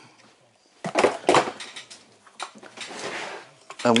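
Hard plastic plumbing fittings knocking and clattering as they are handled and set down. There are a couple of sharp knocks about a second in, another near halfway, then a soft rustle.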